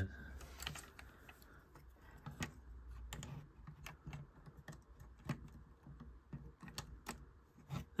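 Faint, irregular clicks and taps of LEGO plastic pieces being handled, as a minifigure is worked into a tight spot on the build.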